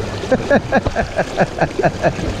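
A man laughing in a quick run of short, falling "ha" notes, about five a second, over the steady rush of shallow river water flowing around his legs.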